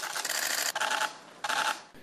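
Many camera shutters clicking rapidly, a dense clatter of shots typical of press photographers at a signing. It comes in two stretches with a brief lull about a second in, and stops just before the end.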